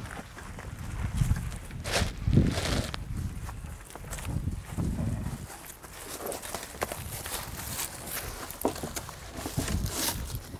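Footsteps on dirt and scattered clunks and knocks as people handle and work on a vintage Triumph racing motorcycle by hand; no engine is running.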